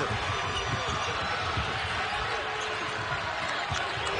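Basketball dribbled on a hardwood court, a few bounces heard over steady arena crowd noise.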